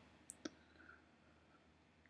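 Near silence with two faint, short clicks a little under half a second in.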